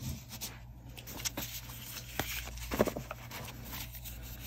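Faint handling of a small deck of tarot cards: soft rustles and scattered light taps and ticks as the cards are picked up and slid against one another.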